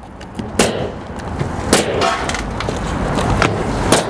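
Pneumatic coil roofing nailer firing nails through an asphalt shingle into the roof deck, three loud sharp shots at uneven intervals with smaller knocks between.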